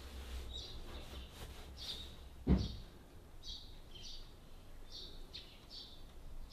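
Small birds chirping outdoors in short repeated calls, one or two a second, over a faint low background rumble, with a single dull thump about two and a half seconds in.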